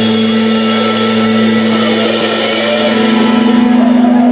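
Live blues band holding one long sustained chord on electric guitar and bass under a wash of cymbals. The cymbal shimmer dies away about three seconds in while the chord rings on.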